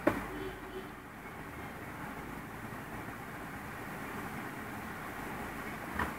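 Steady low background noise, a faint rumble and hiss, with a light knock at the very start.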